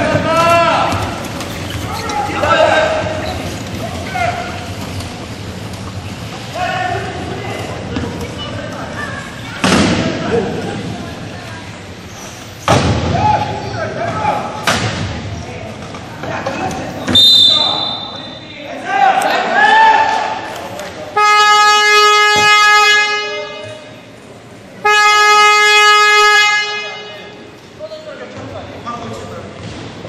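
Shouting voices echo in a sports hall during wheelchair rugby play, with a couple of sharp knocks about ten and thirteen seconds in and a short whistle a few seconds later. Then an electronic game horn sounds two long, steady blasts of a couple of seconds each, about a second apart, signalling a stop in play.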